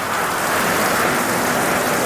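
Simulated rain from a rain-test spray rig pouring onto a motorhome's roof and body and splashing onto wet concrete: a steady, heavy downpour.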